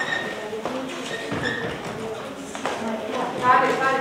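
Voices talking indistinctly, with a few light knocks.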